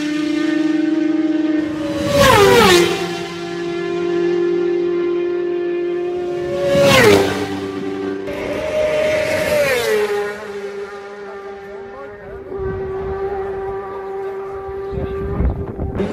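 Racing motorcycles passing flat out one after another, each high-revving engine note dropping sharply in pitch as it goes by. Loud passes come about two and seven seconds in, a third around ten seconds, and the engine notes hang on as the bikes pull away.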